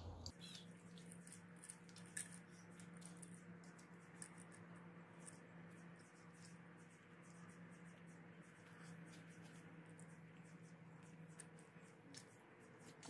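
Near silence with scattered faint, light clicks of a metal balance shaft chain being handled and fed over its sprockets, over a faint steady hum.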